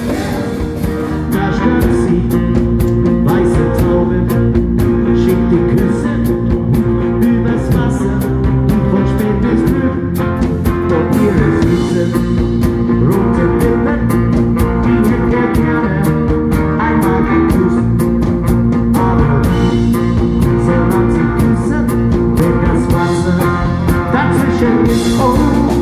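Live band playing a rock song, with drum kit and electric bass keeping a steady beat.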